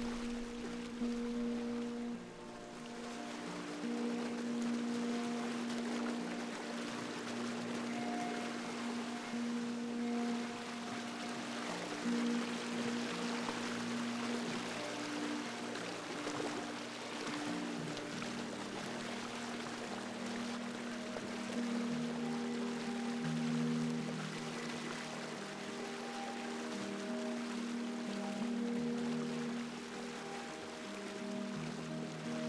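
Slow ambient music of long, held notes changing every second or two, over a steady bed of flowing water.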